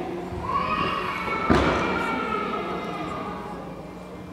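A single thud about a second and a half in, echoing in a large sports hall, over a drawn-out voice.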